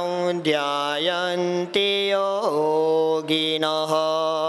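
A man's solo voice chanting a mantra. He holds each note long and steady, slides or steps between pitches, and takes short breaks between phrases.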